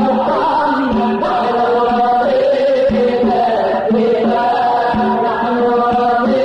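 Arabic Islamic nasheed sung by a male voice in an ornamented, melismatic Middle Eastern style. A low drum beat falls about every two seconds under the singing.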